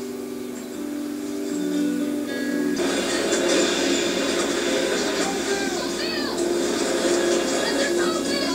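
Television episode soundtrack: sustained music chords that cut off abruptly about three seconds in, giving way to a steady noisy background with faint voices.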